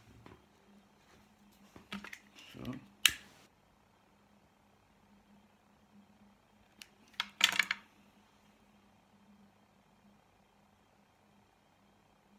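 A few sharp isolated clicks with a loud one about three seconds in, as a lighter is flicked to melt a hot-glue stick, and a short scuffing burst of handling noise about halfway through.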